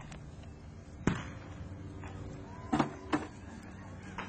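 Gunshots, most likely blank rounds fired in a reenactment: one sharp report about a second in, then three more in quick succession near the end.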